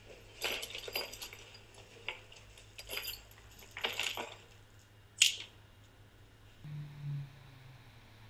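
Light metallic clinks from the episode's soundtrack, about six of them spread out, the sharpest about five seconds in, with a brief low hum near the end.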